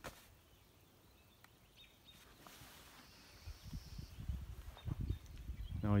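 Faint outdoor background, with soft irregular low thumps and rumble from the phone being handled and carried in the second half, and a brief faint hiss around the middle.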